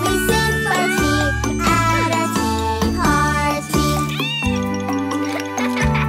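A cartoon kitten meows in time to a bouncy children's song, several meows following the tune. The meows stop about four and a half seconds in, and the music carries on alone.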